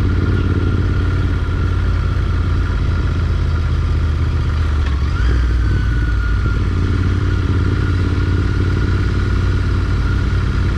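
Motorcycle engine running at low, steady revs, heard from on the bike while riding slowly.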